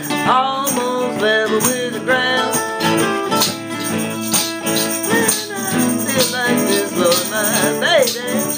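A blues band playing between sung lines, with bending lead notes over a steady accompaniment and a shaker-like rattle keeping time.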